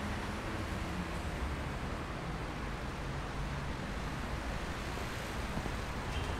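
Steady distant city traffic ambience: an even rushing hum with no distinct events.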